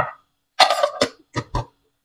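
A person coughing: one longer burst followed by two short ones, with silence between.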